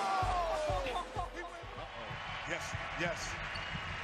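Basketball bouncing on a hardwood court after falling through the hoop: a few irregular low thuds.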